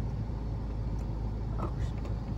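Steady low hum inside a Mini Cooper Countryman's cabin while the car is running, with a faint click of the overhead lighting switch about a second in.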